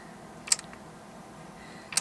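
A hand-cranked wooden rotary marble lift turned slowly, giving a single sharp click about half a second in and another near the end, as marbles and wooden parts knock together.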